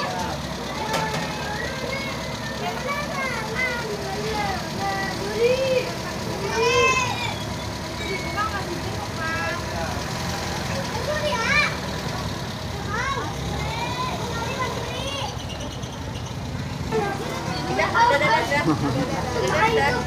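Engine of a small decorated open-sided passenger vehicle idling steadily, under many voices of adults and children talking and calling out around it.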